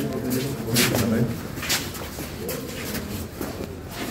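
A voice speaking in short phrases with pauses, the news narration carrying on through a gap in the transcript.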